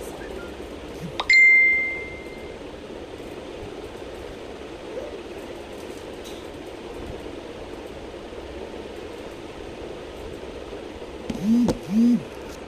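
A single bell-like notification ding from a smartphone about a second in: a clear high tone that rings out and fades over about a second. Steady background noise runs under it, and a couple of short vocal sounds come near the end.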